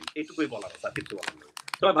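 Typing on a computer keyboard: a quick run of key clicks, heard under ongoing talk.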